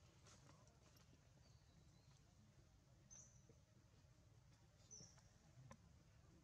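Near silence: faint outdoor background with two brief, faint high chirps, about three and five seconds in.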